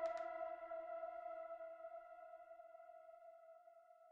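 Background music ending: a held chord ringing on after the last beats and fading away steadily to silence.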